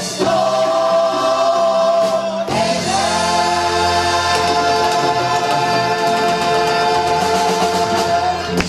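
Gospel choir backed by a band holding long sustained chords: one chord breaks off about two and a half seconds in, and a second is held steadily, with a low bass note under it.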